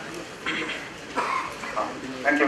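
A person's voice: a few short, indistinct utterances about half a second apart, quieter than the talk around them.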